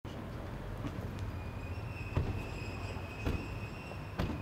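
Low steady rumble of an outdoor urban setting with a thin, steady high-pitched tone coming in about a second in, and two sharp knocks, about two and three seconds in, from car doors being shut.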